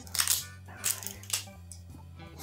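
Plastic shrink-wrap seal on a rum bottle's neck crinkling and tearing as it is picked and peeled off by hand, in three short crackling bursts.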